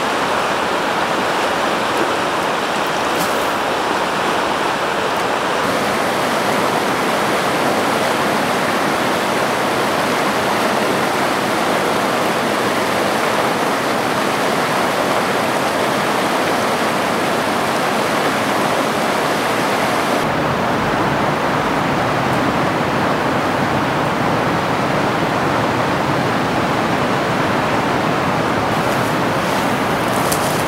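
River water rushing steadily over rapids and along the current. The tone shifts twice, about six seconds in and again about two-thirds of the way through.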